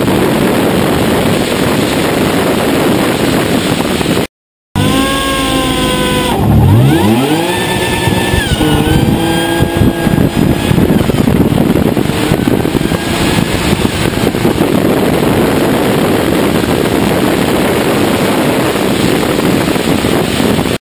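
Drag car running hard, heard from a camera on its hood: a loud, steady rush of wind and engine noise, broken by a short gap about four seconds in, then the engine's pitch falling and rising over a few seconds before the steady rush returns.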